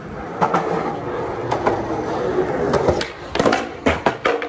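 Skateboard wheels rolling over concrete, with several sharp clacks of the board along the way.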